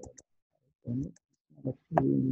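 Computer mouse clicks: three quick clicks near the start and three more about a second later, with a few short muttered words in between.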